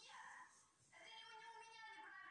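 A woman's shrill, drawn-out cry heard faintly through a television speaker. A short cry comes first, then after a brief pause a longer one held at a steady high pitch.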